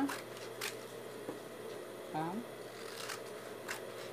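Scissors cutting through a paper pattern sheet: a few crisp snips, one about half a second in and a cluster near the end.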